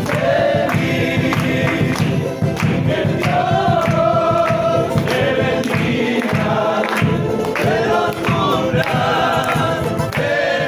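A group of voices singing a Christian song in chorus, accompanied by strummed guitars, a drum and hand clapping on a steady beat.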